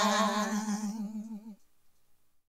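A single held vocal note with vibrato, fading away and stopping about one and a half seconds in: the final note of the song.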